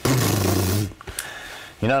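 A man imitating a jackhammer with his voice: a loud, harsh buzzing rattle lasting just under a second, followed by a few spoken words near the end.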